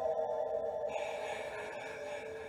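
A single violin sustains a closing note that slides slowly downward in pitch and fades away, the other strings already silent.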